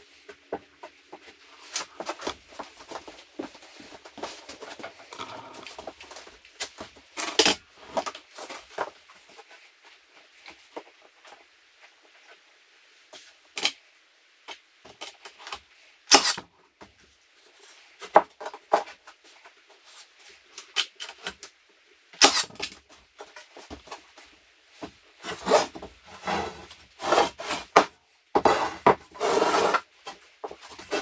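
Wooden 2x4 boards being handled and shifted on an OSB floor: scattered knocks, scrapes and rubbing of wood on wood. There are a few sharper, louder knocks about halfway through, and a busier stretch of scraping and rubbing near the end.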